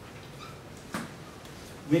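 Dry-erase marker on a whiteboard: a short faint squeak about half a second in and a sharp tap just before a second in, over low room noise.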